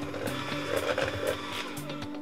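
Cordless electric hand mixer running steadily, its beaters whipping cream to stiff peaks in a stainless steel bowl, under background music.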